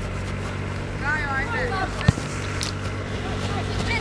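A voice calling out across a football pitch, then a single sharp kick of the ball about two seconds in, over a steady low hum.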